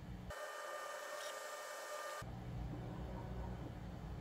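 Faint steady background hum, with a stretch of about two seconds near the start where the low hum drops away and thin, steady whining tones take its place.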